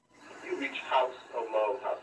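Muffled, thin-sounding speech from a small loudspeaker, the words indistinct.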